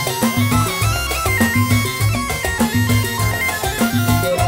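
Live band playing an instrumental passage: a bamboo flute (suling) carries a stepping melody over hand drums, keyboard and a repeating bass pulse.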